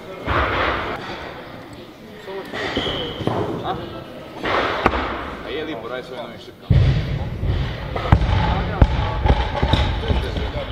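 Thuds and bangs of weight training on lifting platforms, several sudden impacts and a few sharp clanks, over background chatter in a large hall.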